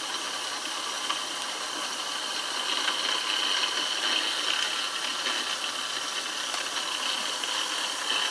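Small 1930s steam turbine running on steam at about 55 psi: a steady hiss with a high, even whine that grows a little stronger about three seconds in. Its bearings have just been given more WD-40, which it uses as lubricant.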